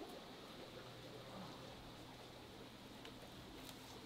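Near silence: faint steady hum of room tone, with a few faint light clicks later on.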